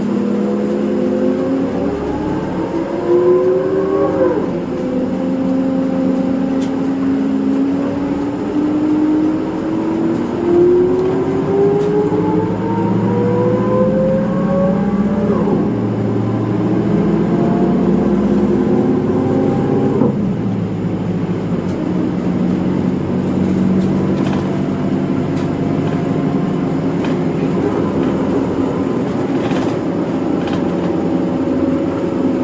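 Isuzu Erga Mio city bus's diesel engine heard from inside the cabin, pulling away and accelerating. Its pitch climbs and drops back at each gear change, three times, about 4, 15 and 20 seconds in, before settling to a steady cruise.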